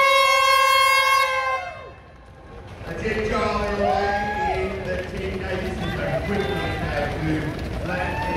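An air horn gives one steady blast, the start signal for the race, which ends about two seconds in. From about three seconds in, a crowd of spectators and runners cheers and shouts as the field sets off.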